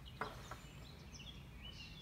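Mostly quiet, with one soft metallic knock about a quarter second in as the metal chain-holder bracket is handled. Faint high chirps sound in the background.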